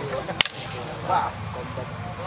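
A single sharp slap of a hand or arm strike landing in hand-to-hand sparring, about half a second in. A short shout from the watching crowd follows about a second later.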